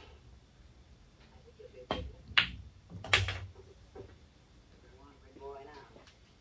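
Pool shot on a home table: the cue tip strikes the cue ball about two seconds in, a sharp ball-on-ball click follows, and a heavier knock with a low thud comes under a second later as the 2 ball drops into a pocket, followed by a lighter click.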